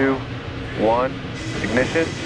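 Launch countdown voice calling "two", then another number about a second later, over a steady background rush with no sudden change in it.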